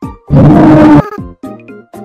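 A loud, distorted burst of noise lasting under a second, starting shortly after the cut, followed by short, choppy stabs of music.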